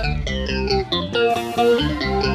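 Live swingueira band music: a guitar playing a melodic run over bass, with the drums dropped back.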